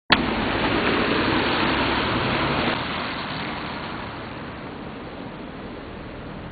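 Tyres hissing on a wet road as a car passes: a loud, even hiss for the first two or three seconds, then fading away.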